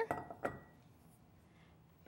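Glass measuring cup knocking lightly against a glass mixing bowl as carob powder is tipped in, one short clink about half a second in, with a brief ringing tone. Faint room tone follows.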